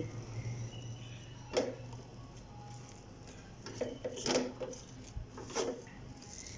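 Wooden masher pounding cooked beef and lentil mixture in an aluminium pot, giving a few irregular soft knocks, most of them in the second half, over a low steady hum.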